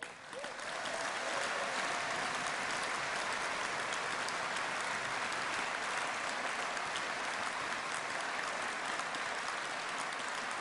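A large hall audience applauding, the clapping swelling over the first second or two and then holding steady.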